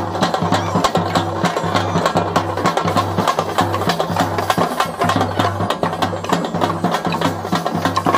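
A group of double-headed drums slung from the shoulder, beaten with sticks in a fast, dense rhythm. A deep drum tone pulses underneath the sharp stick strokes.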